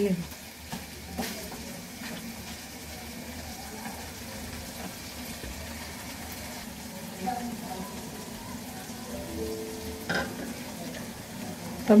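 Marinated goat meat frying in an aluminium karahi over a gas flame: a steady sizzle. A wooden spatula stirs it and knocks against the pan a couple of times.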